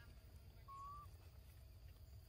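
Near-silent outdoor background with a low rumble and a faint steady high tone, broken once, about two-thirds of a second in, by a short, thin, even-pitched animal call.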